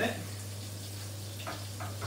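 Fish frying in a pan on a gas hob: a steady sizzle over a low hum, with a couple of faint knocks about one and a half seconds in.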